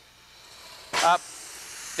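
Compressed air hissing from a Positech pneumatic vertical lift cylinder's control valve as the lift is cycled down and up. The hiss grows steadily, is broken by a short spoken "up" about a second in, then runs on steadily.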